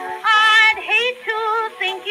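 A female singer on a 1909 Edison cylinder recording of a comic ragtime song, over instrumental accompaniment. A sung phrase begins about a quarter second in, with wide vibrato, and the sound is thin and without bass.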